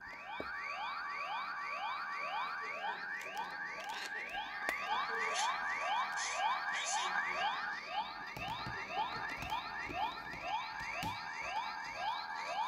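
CSM Faiz Phone (Kamen Rider Faiz transformation toy) playing its electronic standby loop after the "Standing by" call: a synthesized tone sweeping upward, repeated about twice a second. A few small plastic clicks from the phone being handled and brought to the belt sound in the second half.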